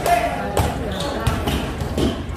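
A basketball dribbled on a painted concrete court, several sharp bounces about half a second apart, over the steady chatter of a watching crowd.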